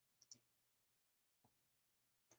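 Near silence broken by faint computer mouse clicks: two quick clicks just after the start and a single one about a second and a half in.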